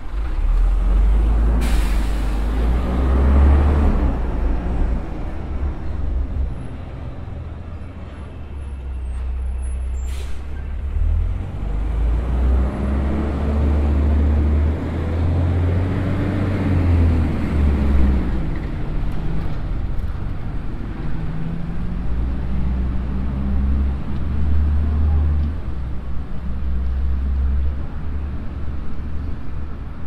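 Street traffic with a low rumble throughout. A motor vehicle's engine passes around the middle, rising then falling in pitch, and two brief sharp sounds come near the start and about ten seconds in.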